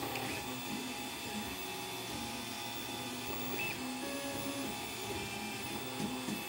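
Home-built 3D printer running, its stepper motors giving a string of short humming tones that change pitch every fraction of a second as the print head moves and lays down PETG.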